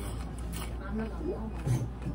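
Indistinct voices murmuring over a steady low room hum.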